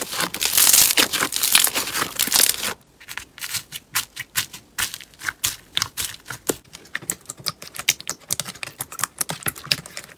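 Hands squeezing glossy clear slime, a dense crackling, then, after a short break about three seconds in, hands pressing thick yellow slime with small white beads in a tub, giving many quick separate clicks and pops.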